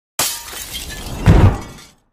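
Glass-shattering sound effect of a 'breaking news' sting: a sudden crash of breaking glass, then a deep boom a little past a second in, fading out.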